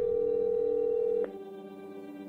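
Telephone ringback tone: one steady electronic ring of about a second and a quarter, then a gap, as an outgoing call rings before being answered, with a faint music bed underneath.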